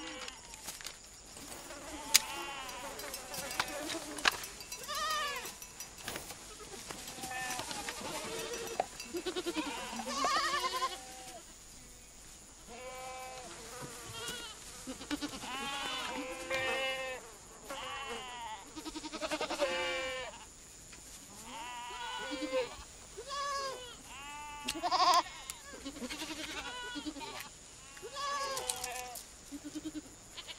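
A herd of goats bleating, with many short calls that overlap and repeat throughout. There is a single sharp click about two seconds in.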